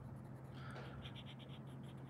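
Coloured pencil shading on paper: faint, quick back-and-forth scratching strokes that become clearer about a second in, over a steady low hum.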